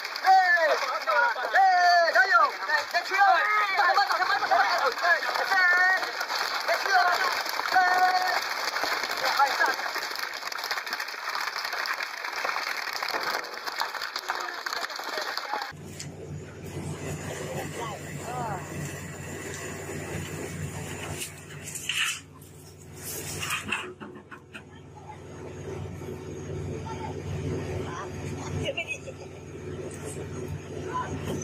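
A group of men shouting together while hauling a net of tuna by hand. After an abrupt cut, the steady low drone of a fishing vessel's engine and deck machinery takes over, with two short clanks in the middle of it as a net brailer of tuna is handled on deck.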